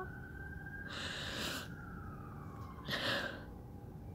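Two sniffing breaths, about a second in and again near three seconds, from a woman who is upset in the middle of a panic attack. A faint siren wails slowly up and then down in the background.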